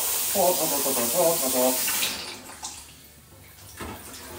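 Hot water from a kitchen mixer tap running into a steel saucepan and stainless sink as a cloth straining bag is rinsed under it. The flow stops about halfway through, and there is a short knock just before the end.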